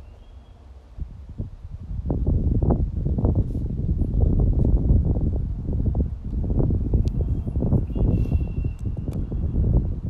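Wind buffeting the microphone in gusts, a deep, uneven rumble that picks up about two seconds in, with leaves rustling in the tree overhead.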